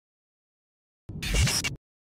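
A short intro sound effect, a noisy whoosh with a low tone that rises in pitch. It starts about a second in, lasts under a second and cuts off abruptly.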